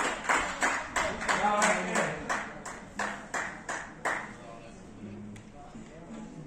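Hands clapping in a steady rhythm, about three claps a second, applauding a goal just scored, with voices shouting at first; the clapping stops about four seconds in.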